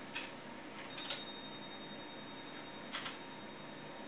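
Cardstock paint sample strips being set down and slid into place on a picture frame's glass: three light taps over a faint steady hiss.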